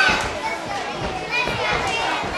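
Many children's voices chattering and calling out at once, high-pitched and overlapping.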